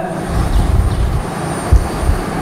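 Low, uneven rumbling noise, with a single short thump about three-quarters of the way through.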